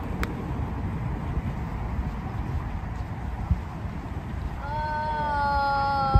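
A mini golf putter strikes the ball with a sharp click just after the start, over a steady low rumble of wind on the microphone. Near the end a girl's long, level, high-pitched cry is held for about two seconds.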